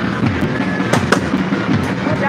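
Dense crackling with two sharp cracks a fraction of a second apart, about a second in.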